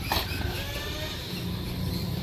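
Radio-controlled monster truck racing on a dirt track: a faint motor whine over a low rumble, with a short knock just at the start.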